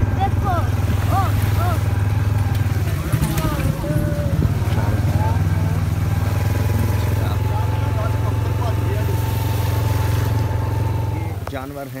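Small motorcycle engine idling steadily, with people's voices over it; the engine sound stops near the end.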